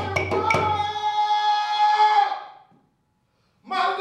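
Hand-played djembe and wooden claves strike a few last beats under a held sung note, which fades away about two and a half seconds in. After a brief silence the male singer comes back in strongly near the end.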